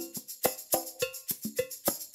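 Pop percussion metronome loop at 210 beats per minute in 4/4: a fast, even pattern of percussion strikes, some with short pitched tones.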